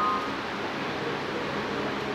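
Steady hiss of background noise with no speech, and a brief pair of high steady tones right at the start.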